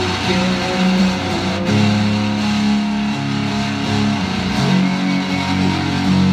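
Live electric guitar playing a slow passage of long, held low notes, with a higher line that slides in pitch above them.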